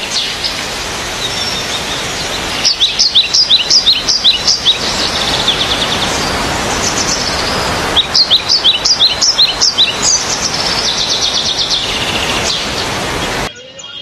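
Birds chirping in repeated quick runs of short, falling notes over a steady background hiss, cutting off abruptly near the end.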